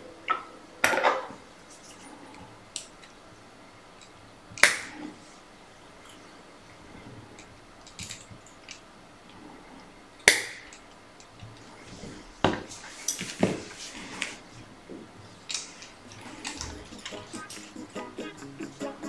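Scattered sharp clicks and light knocks of hands and small metal tools handled at a fly-tying vise, with quieter rustles between; the loudest come about a second in, near five seconds and about ten seconds in, with a cluster of smaller ones later.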